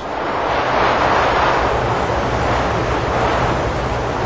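Steady rushing noise of wind and sea, with a faint low hum beneath it.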